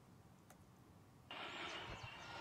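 Near silence, then a little over a second in a steady hiss of outdoor background noise cuts in suddenly.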